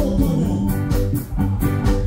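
Live ska band playing, with electric bass, keyboard and drums keeping a steady beat.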